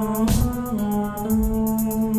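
Live band music: sustained brass-like keyboard chords over a fast, even high ticking, with a drum hit near the start.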